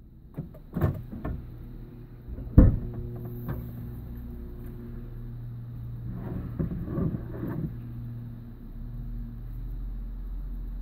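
Two thuds like car doors shutting, about one and two and a half seconds in, the second the louder, then the car's engine idling with a steady low hum.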